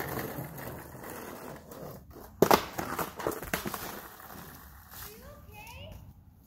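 Skateboard wheels rolling on an asphalt driveway, with a sharp, loud clatter about two and a half seconds in as the board hits the ground. A short vocal sound comes near the end.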